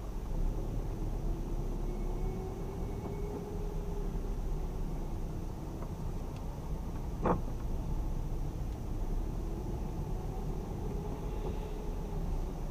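A car driving slowly, heard from inside the cabin: a steady low rumble of engine and tyres, with one brief sharp sound about seven seconds in.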